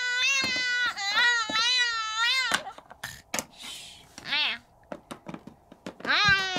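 A high voice giving long, wavering crying whines in pretend play for the first two and a half seconds, then a short rising-and-falling call about four and a half seconds in. Light clicks and knocks of plastic toys being set down on a wooden floor come between.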